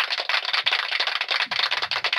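A dense, rattling crackle of rapid, irregular clicks with no tone to it.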